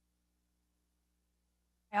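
Near silence: the microphone's audio has dropped out as its battery dies, leaving only a faint steady hum. A woman's voice starts speaking right at the end.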